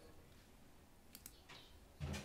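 Near silence with a few faint computer clicks just over a second in, as the pointer is clicked on an on-screen dialog and a file.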